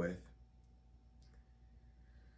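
The tail of a man's word, then a quiet room with two faint clicks about half a second apart and a faint steady hum underneath.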